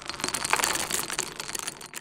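Many small hard-shelled candies pouring and clattering together: a dense rattle of tiny clicks that tails off near the end.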